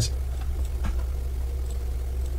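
A steady low hum, with a faint click a little under a second in.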